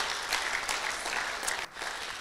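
Congregation applauding, the clapping thinning out and stopping shortly before the end.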